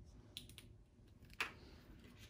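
Faint small clicks of a receiver-in-canal hearing aid being handled as its battery is put back in, with one sharper click about a second and a half in.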